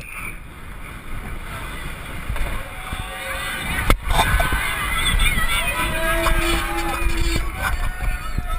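Downhill mountain bike run heard from a helmet camera: low rumble of wind and tyres, with a sharp knock about four seconds in. From the middle on, spectators lining the course yell and cheer, and a horn is held for over a second near the end.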